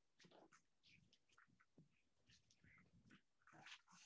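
Near silence: faint room tone with scattered soft rustles and clicks.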